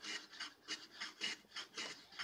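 A hand tool rasping back and forth across the edge of a wooden router-plane body, in even strokes about three a second, as the bevel is shaped.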